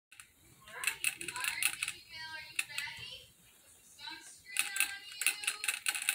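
Baby rabbit licking the metal ball-valve spout of a gravity water bottle, a rapid clicking of about six clicks a second in two runs, the second starting about halfway through.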